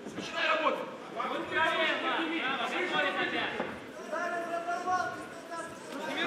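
Men's voices shouting from cageside, coaches calling instructions to the fighters, in long raised calls heard below the level of the commentary.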